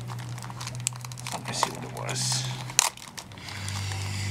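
Crinkling and rustling as a stack of old, paper-thin collector cards is handled, many small rustles and clicks, over a steady low hum that breaks off about three seconds in.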